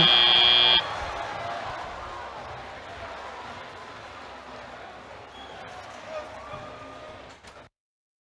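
FRC field's end-of-match buzzer sounding once for under a second, followed by a quieter wash of arena crowd noise that slowly fades away.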